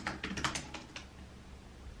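Typing on a computer keyboard: a quick run of about ten keystrokes in the first second.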